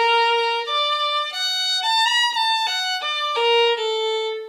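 Solo fiddle bowing a swing-style augmented-arpeggio lick with an extra note added, played legato. The line climbs in steps to a high point about halfway through, comes back down, and ends on a long held note.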